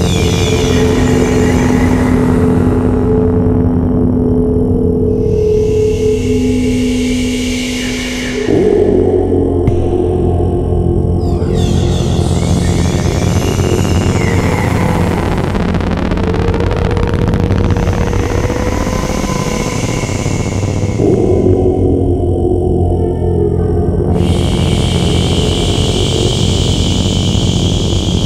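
Sound-healing music of gongs and singing bowls: a low drone and long held tones, with shimmering high washes that swell and fade every few seconds. The texture changes abruptly about eight seconds in.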